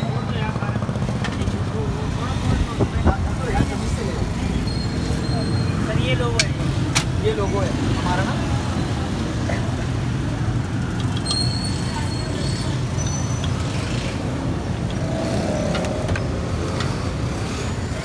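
Busy street ambience: a steady low rumble of traffic with background chatter. A few sharp knocks and clinks come about three seconds in and again around six to seven seconds.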